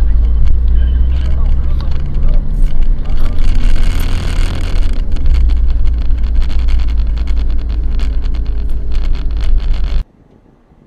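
Car driving, heard through a dashcam microphone inside the cabin: a loud, low rumble of engine and road noise with frequent clicks and knocks. It cuts off suddenly at the end.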